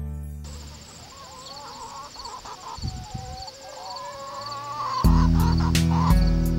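Chickens clucking and crooning, with a faint high chirp repeating a few times a second behind them. Acoustic guitar music fades out at the start and comes back in about five seconds in.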